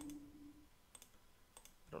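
A few faint computer mouse clicks, about a second in and again shortly before the end, against near silence.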